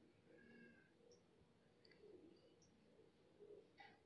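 Near silence with a few faint sounds: a brief faint pitched sound about half a second in and a faint click near the end.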